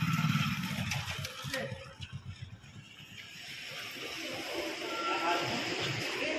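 Indistinct voices of people talking, not close to the microphone. The talk drops away about two seconds in and picks up again after about four seconds.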